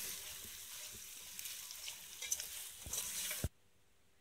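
Peas, carrots and potatoes frying in hot oil in a pot, a steady sizzle, while a spoon stirs them with a few clicks and scrapes against the pot. The sizzle cuts off suddenly about three and a half seconds in.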